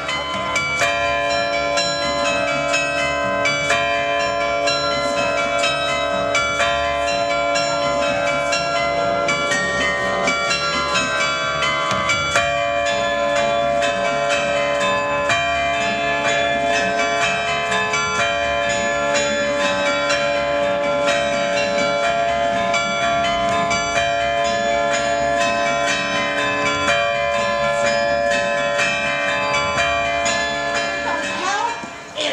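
Carillon of tuned bells played from its keyboard: a quick melody of many struck, ringing bell notes that carries on without a break.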